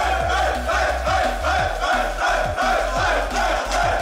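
Dance music with a heavy kick drum at about two beats a second and a strong bass line, with a group of young men shouting and singing along as they celebrate.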